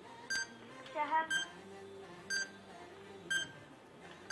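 Countdown timer beeping once a second, four short high beeps, marking the seconds ticking away in a timed round.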